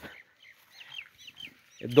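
A few faint, short high chirps from birds in a lull, followed by a man's voice starting near the end.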